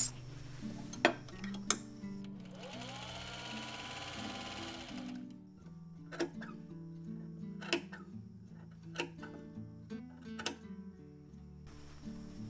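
Vintage Singer sewing machine running for about three seconds, starting a couple of seconds in, as it stitches around the outer edge of a fabric hat brim. Quiet background music plays throughout, with a few short clicks.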